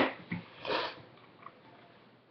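A person sniffing once through the nose, a short noisy rush just under a second in, after a couple of brief breathy sounds; then quiet room tone.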